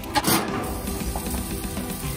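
Background music over the steady hiss of whole sea bass sizzling in wire grill baskets on a gas grill, with a brief rough scrape near the start.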